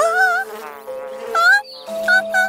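Cartoon bee buzzing sound effect: a wavering, wobbling buzz at the start and a shorter second one about one and a half seconds in, over steady held tones.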